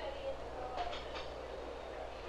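Low murmur of dining-room voices over the steady hum and hiss of an old film soundtrack.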